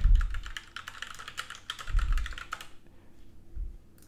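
Fast typing on a computer keyboard, a quick run of key clicks that stops about two and a half seconds in, followed by a few more keystrokes.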